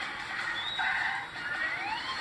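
Cartoon sound effect of shoes screeching, rising squeals in the second half, played through a TV speaker.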